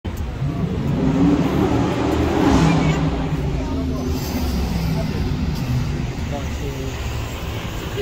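A car engine running in busy city-street traffic, loudest in the first few seconds, with people's voices around it.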